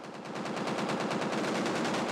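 Automatic gunfire: a rapid, unbroken stream of shots that builds over the first half second and then holds steady.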